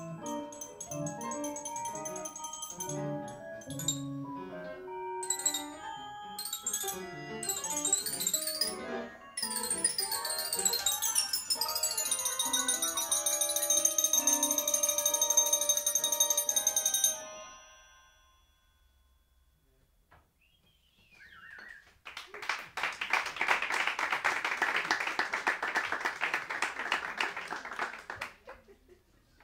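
Live improvised music: many ringing pitched notes, like mallet percussion, with high steady tones above them, cutting off suddenly about two-thirds of the way in. After a few seconds of silence, the audience applauds.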